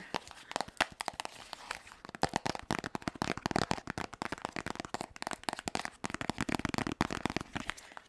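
Long fingernails tapping, scratching and rubbing on a small boxed charger's cardboard packaging close to the microphone, giving a dense, irregular run of crackly clicks and crinkles.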